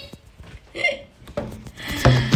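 A woman's two short, high-pitched vocal sounds, one at the start and one a little under a second in, followed near the end by rustling and clicking as a plastic bag and handbag are handled.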